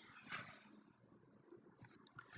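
Near silence: room tone, with one faint short sound about a third of a second in.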